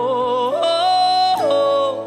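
A woman sings a gospel worship line over held chords from the band. She starts on a wavering note, steps up to a high held note about half a second in, and slides back down to a lower held note near the end.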